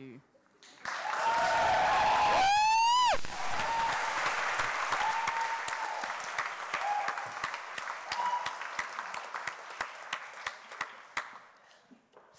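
Audience applause with cheering, starting about a second in and slowly dying away. A loud rising whoop cuts through about two and a half seconds in, with a few shorter calls after it.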